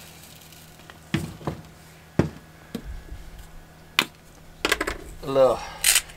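Spice jars handled over a bowl while seasoning potatoes: a few separate sharp clicks and taps as garlic is shaken in and the jar is put down and another picked up, with a brief cluster of quick ticks near the end.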